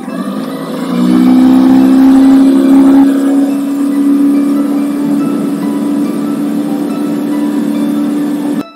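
Tiller-steered outboard motor on a small aluminium boat speeding up, its pitch rising about a second in and then holding at a steady high note under way.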